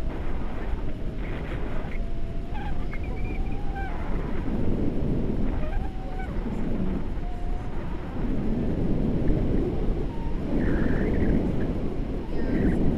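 Wind buffeting the microphone of a camera on a selfie stick during a tandem paraglider flight, a rough, uneven rush that swells and eases, with a few faint wavering tones in the middle.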